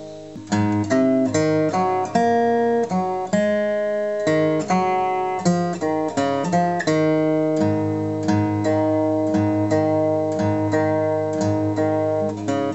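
Steel-string acoustic guitar capoed at the fourth fret, fingerpicked with the thumb alternating with the index finger. A chord rings out and fades for the first half-second, then a quick run of single plucked notes over ringing chords picks up and keeps going, several notes a second.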